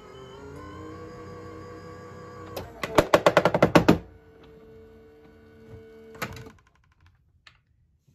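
Sizzix Big Shot Switch Plus electric die-cutting machine running its rollers on an over-thick plate stack: a steady motor whine, then a rapid run of about a dozen loud clacks lasting over a second. After that the motor tone runs on with a knock and stops. The machine is straining, which the crafter puts down to a doubled embossing plate sandwich.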